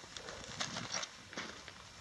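Footsteps on loose rock and gravel, a few faint, irregular crunches.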